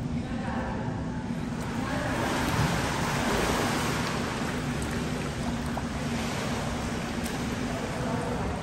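Swimming-pool water rushing and splashing: a steady hiss that swells about a second and a half in.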